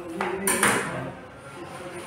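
Brief metallic clatter of a kitchen knife about half a second in, with a short ringing tail.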